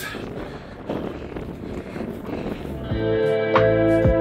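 Wind rushing over the microphone for about three seconds, then guitar background music comes in near the end.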